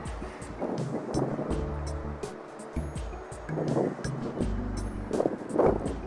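Background music with a changing bass line and light percussion.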